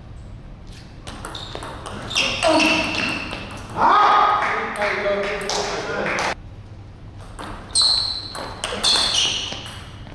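Table tennis ball being struck back and forth in a rally, a series of short sharp clicks off the bats and table.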